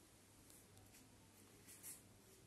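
Near silence: room tone, with a faint, brief rustle of cotton suit fabric being handled near the end.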